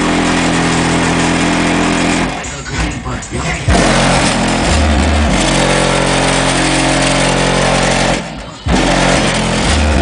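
Car-mounted air train horn sounding loud, chord-like blasts: one ends about two seconds in, a second runs about four and a half seconds, and a third starts shortly before the end.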